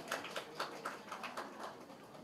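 A few scattered hand claps from the gathered crowd, thinning out and fading away: the tail end of a round of applause.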